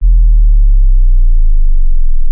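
A loud, deep electronic tone from a logo animation's sound design. It starts suddenly and slides slowly down in pitch.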